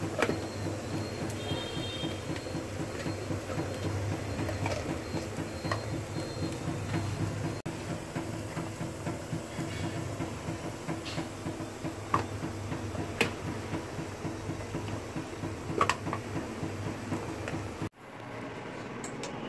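A steady low mechanical hum, with a handful of light clicks and taps from a plastic bottle being handled.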